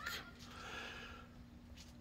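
A faint breath drawn between sentences, over a thin steady hum of room tone.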